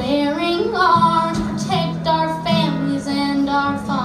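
Live music: a young female singer's voice over an acoustic guitar, her pitch sliding upward in the first second before settling into the melody.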